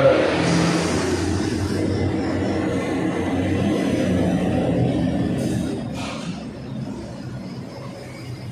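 A steady engine rumble of a vehicle running outside, easing off about six seconds in. Short scratches from a marker drawing on a whiteboard come near the fade.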